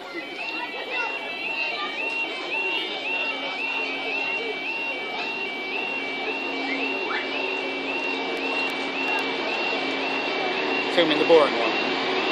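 A Great Western Railway Class 166 diesel multiple unit approaching and running into the platform, its engine and wheels growing louder and sweeping in pitch near the end. Over it a warbling electronic alarm repeats about twice a second throughout.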